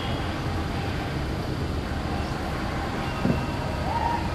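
Steady low outdoor rumble with no clear single source, and one short knock about three seconds in.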